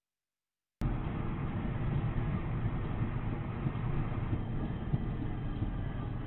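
Silence for the first second, then a steady low rumble of engine and road noise from inside a moving car's cabin, muffled and dull.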